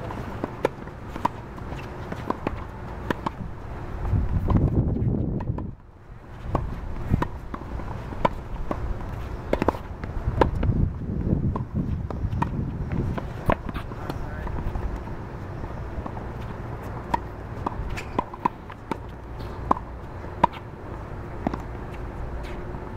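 Tennis balls struck by rackets in a fast volley exchange at the net: sharp pops every half second to a second, with shoes scuffing on the hard court. A low rumble swells twice, a few seconds in and again around the middle.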